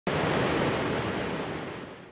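A river in flood, fast muddy water rushing over rocks, a steady noise that fades away near the end.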